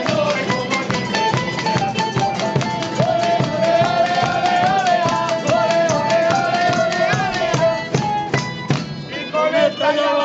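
Spanish folk street band playing: acoustic guitars and a small lute strummed in rhythm over a beaten double-headed drum, with a long held, slightly wavering melody note through the middle. The music thins briefly a little before the end.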